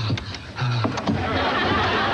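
A muffled voice, as if a hand is over the mouth, then a wash of studio audience laughter from just past a second in.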